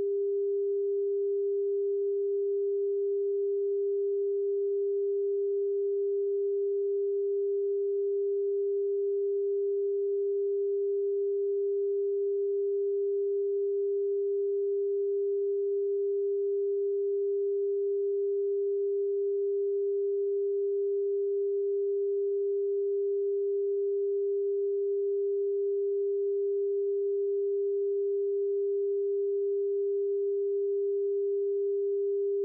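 Broadcast test-card tone: one pure tone held at constant pitch and level, the line-up signal a television station transmits over its PM5544 test card while off-air before sign-on.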